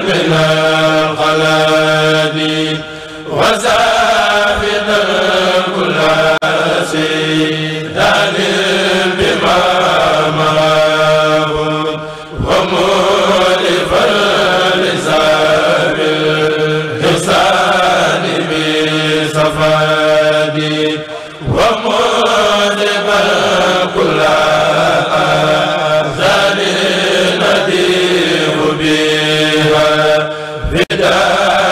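A group of men chanting a khassida, a Mouride devotional poem, into microphones. The chant goes in long sustained phrases with brief breaks about every nine seconds.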